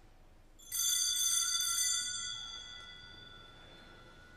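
Small altar bells struck once, a cluster of high bell tones that rings out and fades over about two seconds: the bell rung at the consecration of the chalice during Mass.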